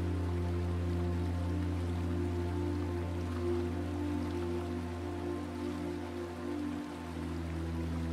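Soft, slow ambient meditation music of long, held drone notes with a deep low tone underneath, over a faint steady hiss.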